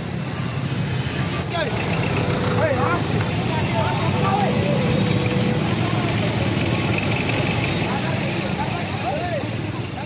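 Street-protest crowd noise: many voices shouting and talking over steady engine noise from motorbikes and traffic idling and moving close by. The noise swells in the middle.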